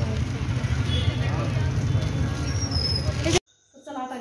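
Busy street-market ambience: a steady low rumble of traffic with indistinct chatter of passers-by, which cuts off abruptly near the end.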